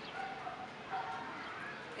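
A dog barking faintly, two short calls.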